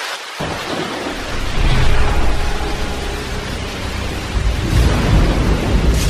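Rain with rolling thunder. The deep rumble comes in suddenly about half a second in, swells twice, and starts to ease near the end.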